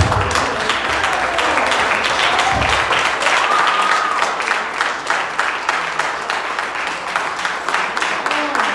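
Congregation applauding: many hands clapping densely and steadily, with a faint pitched voice or tone rising briefly over it about three seconds in.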